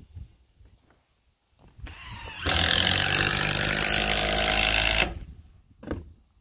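Cordless DeWalt drill-driver driving a screw into a wooden dock board: the motor spins up about two seconds in, runs loud and steady for about two and a half seconds, and stops abruptly.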